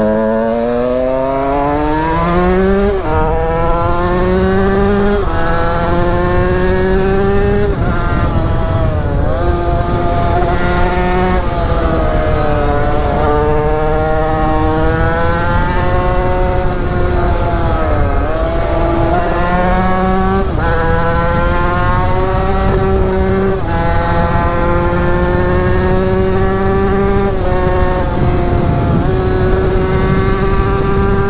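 Two-stroke 50cc enduro motorcycle engine kitted to 80cc (Airsal cylinder, 24 mm PWK carburettor, SCR Corse expansion pipe) pulling hard through the gears: the engine note climbs in pitch and drops back at each upshift, several times. It eases off and dips around the middle, then climbs and shifts up again.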